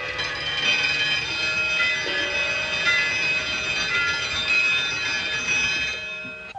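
Many clocks chiming and ringing together: a dense, steady chorus of bell tones at many pitches, with new tones joining about two and three seconds in.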